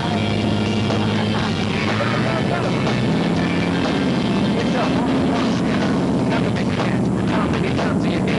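Pickup truck engine running steadily under load as it tows, its low hum shifting in pitch around the middle, with people's voices shouting over it.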